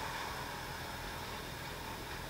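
Steady faint hiss, the background noise of a broadcast audio feed in a gap between announcer lines, with no distinct sound events.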